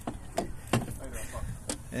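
Three sharp clicks over a steady background hiss, with faint voices in between.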